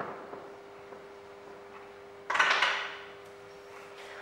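A felt-tip marker scratching briefly on flipchart paper, then a louder, brief scraping rustle a little over two seconds in, over a steady faint hum.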